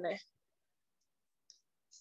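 The tail of a spoken word, then near silence with a faint, brief click about one and a half seconds in.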